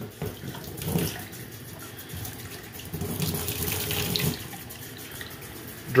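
Water running from a faucet into a utility sink and splashing over a cloth applicator pad held in the stream, the water running straight off the pad's ceramic-coated surface. The splashing is louder for a second or so a little past the middle.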